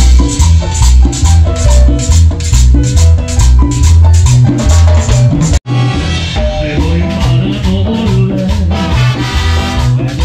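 Live Latin dance orchestra playing an upbeat number with a heavy bass beat and hand percussion (congas, timbales) driving a steady rhythm. The sound drops out for an instant just past halfway, then the music carries on.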